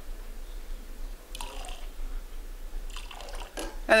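Water poured from a tipped glass into a large glass beaker packed with ice, topping it up to the 3,000 mL mark; the water trickles onto the ice with a couple of short splashes.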